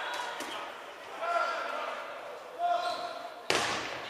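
Voices calling out indistinctly across a gymnasium, then one loud smack of a dodgeball striking, about three and a half seconds in, echoing briefly in the hall.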